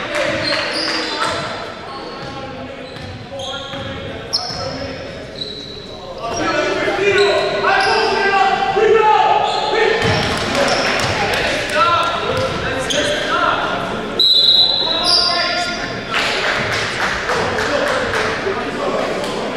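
Basketball game on a hardwood gym floor: sneakers squeak in many short, high-pitched chirps, the ball bounces, and players shout to each other, all echoing in the large hall.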